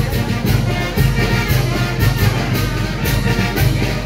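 Oaxacan brass band playing a dance tune: trumpets and trombones carry held notes over a bass line, with a cymbal-and-drum beat about twice a second.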